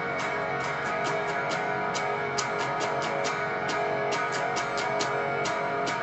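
Electric guitar strumming an F-sharp major barre chord in a repeating down-down-down-up-down-up rhythm, the chord ringing between strokes.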